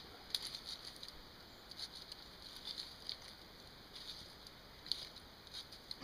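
A fork poking holes in raw red potatoes: faint, irregular little clicks and taps scattered through a few seconds of quiet.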